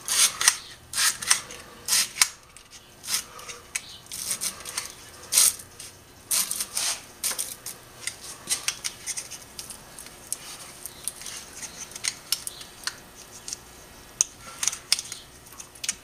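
Heavyweight slot-insulation paper (555 paper) being folded and pushed into the slots of an electric motor's steel stator core: irregular crisp scraping and crackling strokes as the paper drags through the slots.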